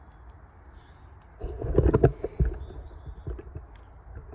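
Low rumbling thumps on the microphone for about a second, starting about a second and a half in: handling noise as the camera is moved. A few faint ticks follow.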